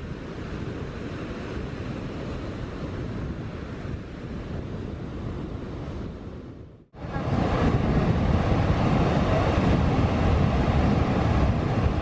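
Sea waves washing onto a sandy beach, a steady rush of surf with wind on the microphone. The sound fades out briefly about seven seconds in and comes back louder.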